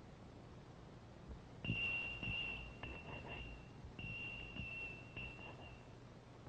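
A high, steady signal tone sounds in two long stretches of about two seconds each, with short breaks, over a few dull knocks.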